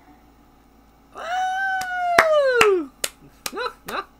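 A man's long, high cry that slides down in pitch, over a run of sharp hand claps about two or three a second, followed near the end by a short rising cry.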